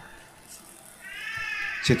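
After a quiet pause, a short high-pitched cry or squeak lasting just under a second starts about halfway through.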